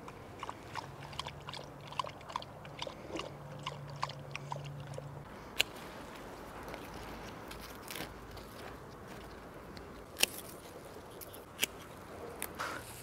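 A dog lapping water from a birdbath: a quick, even run of wet laps, about four a second, for the first five seconds or so. After that come a few isolated sharp clicks of snips cutting dahlia stems.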